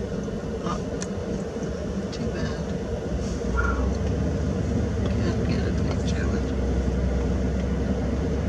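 Car engine and road rumble heard from inside the cabin, getting louder about three and a half seconds in as the car gets moving.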